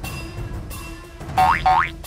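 Background music with a cartoon-style comedy sound effect laid over it: two quick rising pitch glides, one right after the other, about a second and a half in.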